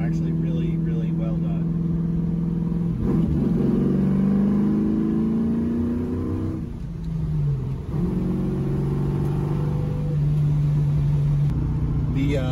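Engine and exhaust of a 1973 Camaro restomod heard from inside the cabin while driving. It runs steady, then rises in pitch as the car accelerates from about three seconds in, drops briefly in pitch and level near seven seconds at a gear change on the six-speed manual, then runs steady again. The exhaust has a very strong, aggressive tone with a little resonance in the cabin.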